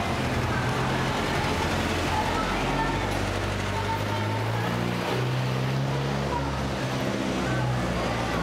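Busy street ambience with traffic running, and bass-heavy music from the open-air bars over it, its low notes stepping to a new pitch every second or so.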